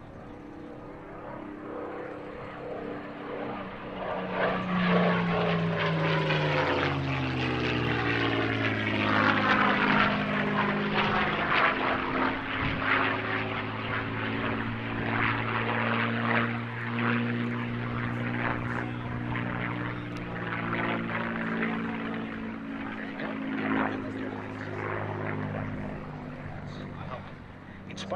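Liquid-cooled V-12 engine and propeller of a World War II fighter making a display pass. The note grows louder over the first few seconds, drops in pitch as the plane goes by, runs steadily for a long stretch, then fades a little near the end.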